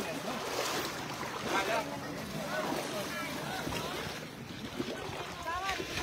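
Shallow lake water sloshing around wading elephants, with wind on the microphone as a steady rushing haze, and a few short bits of talk.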